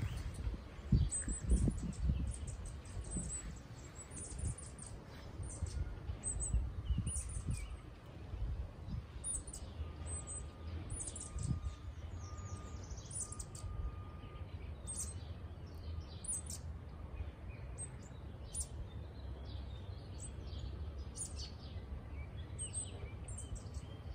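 Songbirds chirping: many short, very high, thin calls repeated over and over, over a low rumble.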